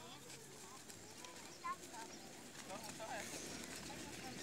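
Faint, distant voices of boys talking and calling out across an open field, with no loud sound in the foreground.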